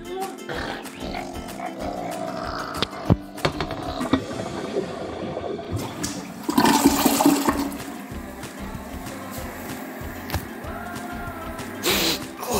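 A toilet flushing, the rush of water building and loudest about six to seven seconds in.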